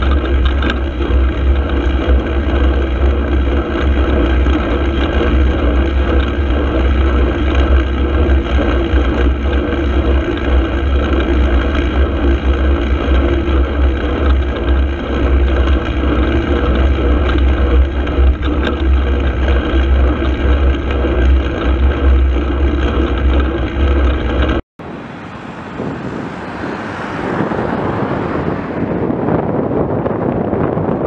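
Loud, steady wind and road rumble picked up by a camera mounted on a moving bicycle. About 25 s in the sound cuts out for an instant, and a different, quieter rush of wind then builds up.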